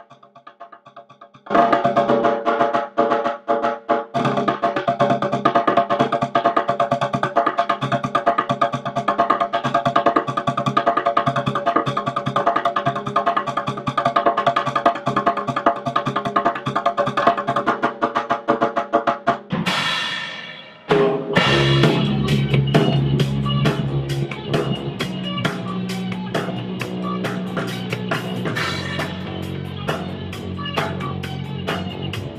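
Music: fast drumming over a held chord. About two-thirds of the way through a cymbal crashes, and a rock band comes in with drum kit, bass and electric guitar.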